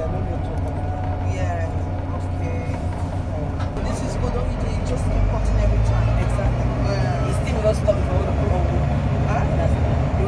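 Volvo B9TL double-decker bus's six-cylinder diesel engine pulling along the road, heard from inside on the upper deck as a steady low drone that grows louder about halfway through.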